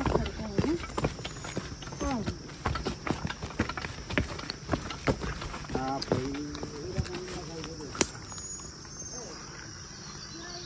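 Footsteps clicking and scuffing on a stony dirt trail as several people walk in single file, with one sharp click about eight seconds in. Short bits of voice break in near the start, about two seconds in and about six seconds in.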